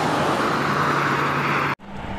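Steady noise of road traffic, tyres on asphalt, with a low steady engine hum under it. It cuts off suddenly near the end.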